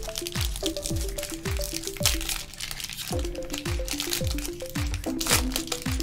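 Background music with a steady beat of about two kicks a second and a simple melody, over the crinkling of a foil Pokémon booster-pack wrapper being torn open by hand.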